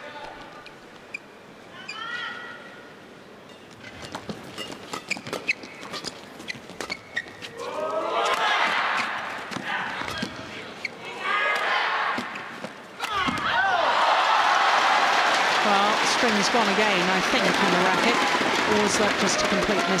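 Badminton rackets striking a shuttlecock in a rally, a quick run of sharp hits about four seconds in. Then an arena crowd shouting and cheering in waves, swelling into loud sustained cheering for the last several seconds.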